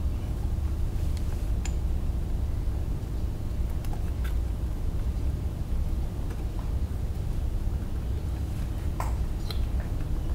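Steady low background rumble of room noise, with a few faint short clicks from hands handling wires and connectors at a 3D printer's control board.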